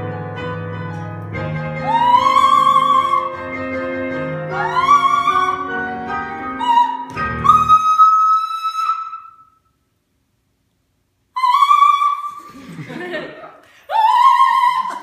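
Soprano singing high, sustained operatic notes with vibrato over piano chords, climbing to a long high note that stops about nine and a half seconds in. After a gap of complete silence she sings another high note.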